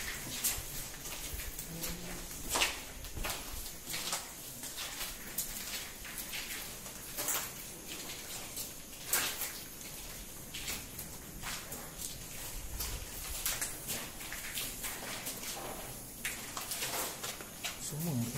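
Irregular footsteps and scuffs on a gritty, debris-strewn concrete floor: a string of short crunches and clicks at uneven intervals.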